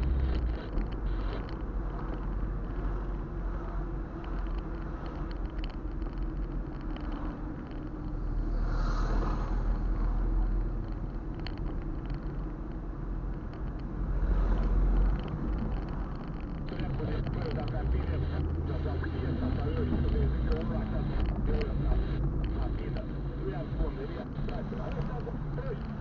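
Car cabin noise while driving slowly in city traffic: low engine and tyre rumble that swells and eases a few times as the car moves along.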